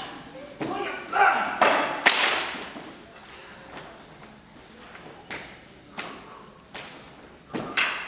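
Men's shouts, then a loud thud about two seconds in as a body hits a wooden stage floor, followed by several sharp knocks on the boards spaced under a second apart, echoing in a large hall.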